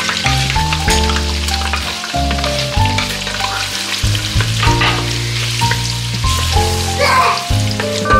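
Chopped onions sizzling and crackling in hot oil in a pot, stirred with a wooden spoon. Background music with a melody and bass notes plays over it and is about as loud.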